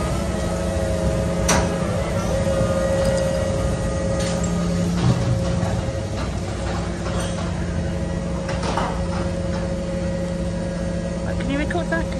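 Heavy diesel engine of a large mobile crane running steadily: a constant low hum with a few higher steady tones above it and the odd faint click. Voices come in near the end.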